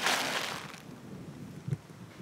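A short rustle of dry grass and a plastic bag as a small rodent is let out into the grass, loudest in the first second and then dying to a faint hiss.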